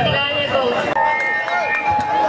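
A voice amplified through a handheld microphone and PA, with steady ringing tones from the sound system; a new one starts about a second in.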